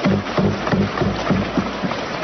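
Many people thumping their hands on wooden desks together: a dense, irregular drumming of blows over a general crowd din. It is the desk-thumping with which members of parliament show approval of a speaker's statement.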